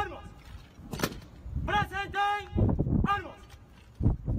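Drill commands shouted by a military honour guard in long, drawn-out calls, several in a row, with one sharp knock about a second in as the soldiers handle their muskets.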